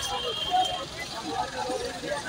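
City street traffic with buses running past, a steady low rumble under the chatter of people nearby.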